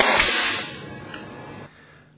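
A nail gun fires once into an eyeglass lens with a sharp crack, shattering the lens. A hiss follows and fades over about a second and a half.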